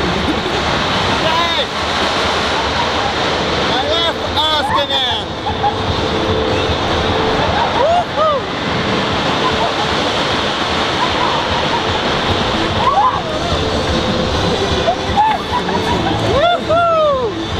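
A steady rushing noise runs throughout. Over it come short voice exclamations that rise and fall in pitch, a few times and clustered about four seconds in and near the end.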